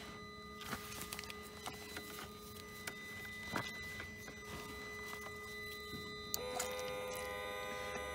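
A few faint handling clicks, then a switch click about six seconds in as a 12-volt submersible fluid pump starts. It runs with a steady electric hum, pumping automatic transmission fluid up a hose into the gearbox sump.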